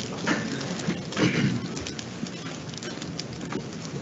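Chairs and clothing rustling as a roomful of people sit back down, with scattered clicks and knocks and a couple of louder shuffles.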